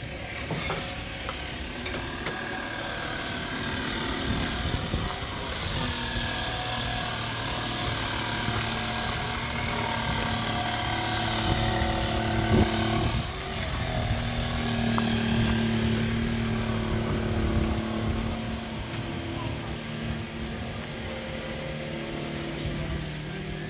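An engine running steadily, its pitch shifting up and down a little every few seconds, over faint background voices.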